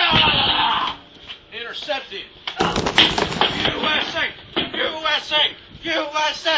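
Young people's voices shouting and yelling, with no clear words. It opens with a loud rushing burst lasting about a second, and a sharp knock comes about two and a half seconds in.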